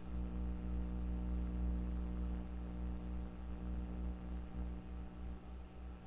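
Steady low electrical hum with several constant tones beneath it and faint room hiss.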